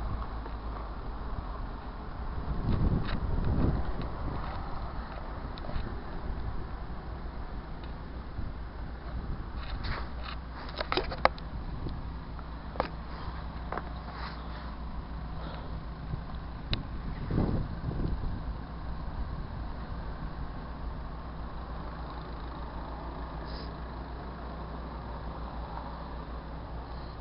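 Steady low engine hum of vehicles on a snowy street, swelling louder about three seconds in and again around seventeen seconds as vehicles pass. A few sharp clicks come in between.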